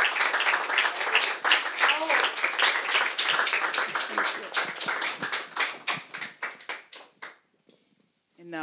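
Audience applauding, with a few voices over it near the start; the clapping thins out and dies away about seven seconds in.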